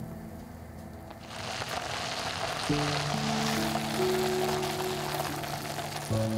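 Tomato sauce sizzling in a frying pan, the hiss rising about a second in and holding steady, under background music.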